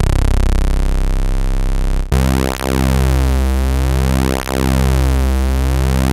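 AIR Mini D software synthesizer (a Minimoog Model D emulation) holding a low bass note on two sawtooth oscillators, one ramp-down and one ramp-up, slightly detuned so the tone beats and phases slowly, about once a second. About two seconds in the note jumps an octave, from C1 to C2.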